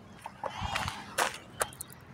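Quiet outdoor background with a faint distant voice about half a second in, then a few short, sharp clicks and knocks in the second half.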